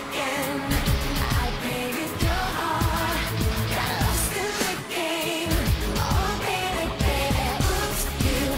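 Live pop concert music: a woman's voice singing over a band with a heavy, regular beat.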